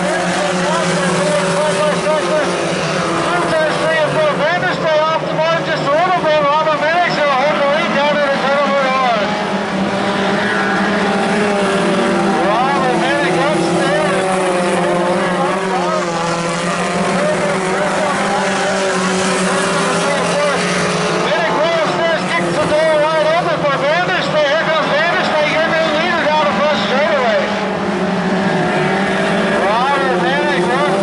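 Several Pony Stock race cars' four-cylinder engines running hard together, their pitch wavering up and down as they rev and lift around the track.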